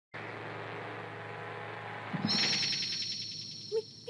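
Animated-film soundtrack: a steady low drone for about two seconds, then a high wavering tone that comes in with a soft low thud and slowly fades out.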